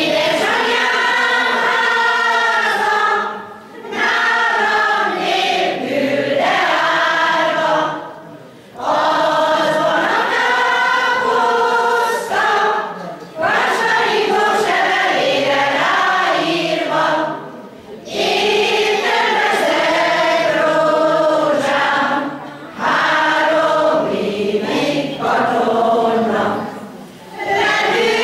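Amateur folk choir of mostly older women's voices, with a few men, singing a Hungarian song together in phrases broken by short breath pauses every four to five seconds.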